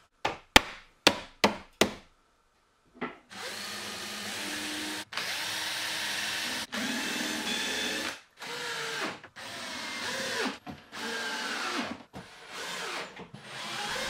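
A few sharp knocks of plywood parts, then a cordless drill-driver running in a string of short bursts, a second or two each with brief pauses. It is pre-drilling countersunk screw holes and driving screws into a plywood drawer body.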